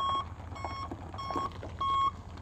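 Backup alarm of a 2001 Chevy 3500 dump truck beeping as the truck reverses, a single-pitched beep about every half second or so, with the truck's engine running low underneath.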